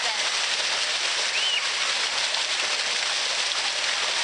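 Fountain jets splashing steadily into a basin: a dense, even rush of falling water.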